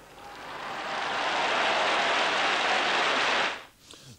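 Large crowd applauding, swelling over the first second and holding steady, then faded out quickly near the end.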